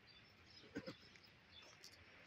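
Faint outdoor ambience with small birds chirping faintly, and one short, louder low sound a little under a second in.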